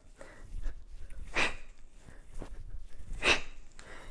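A woman exhaling sharply twice, about two seconds apart: effort breaths with each push press of a kettlebell overhead.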